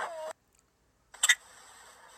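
A voice trails off and cuts to dead silence for under a second as one phone clip ends. A short, high-pitched vocal yelp follows as the next clip starts, then faint steady hiss.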